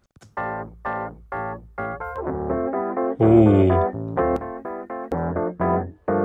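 Rhodes electric piano track from a pop-disco multitrack playing short, rhythmic repeated chords, heard as a mix part on its own.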